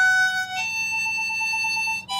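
Harmonica played with cupped hands: a note held for about half a second, then a slightly higher note held with a fast, even wavering.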